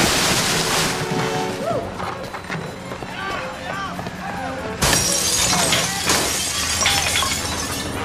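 Glass shattering and objects being smashed in two loud bursts, one at the start and one about five seconds in, with voices shouting between the crashes over music.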